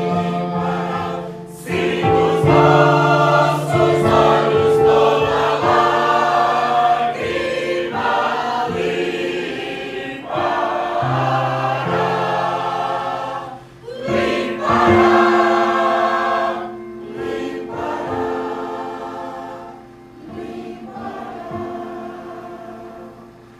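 Mixed church choir singing a sacred piece in sustained phrases, accompanied by an electronic keyboard, with brief breaks between phrases and a softer ending.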